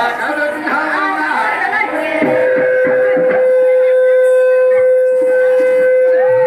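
Voices singing, then from about two seconds in one long, steady, unwavering note held to the end.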